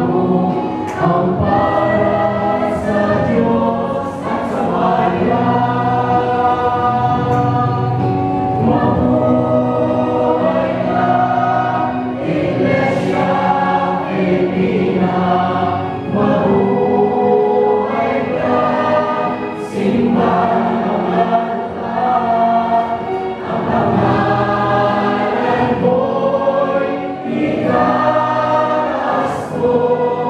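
Church choir singing a hymn in long, held phrases of a few seconds each, with brief breaks between them.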